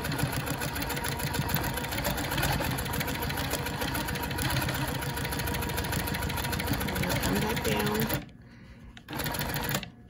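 Quilting machine stitching at speed along a ruler, its needle running a fast, even rhythm; it stops abruptly about eight seconds in.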